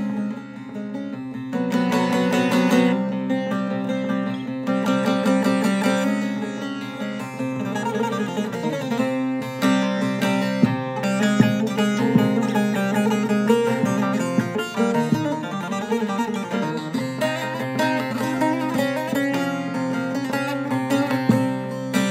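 Solo professional short-neck bağlama with a mahogany bowl and spruce top, played with a plectrum: a continuous plucked melody over a steady low drone.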